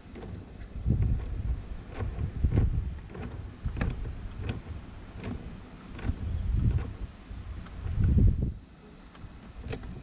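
Scattered clicks and knocks of hands and a tool working at a car battery's terminals and charger leads, with irregular low rumbles from handling or wind on the microphone.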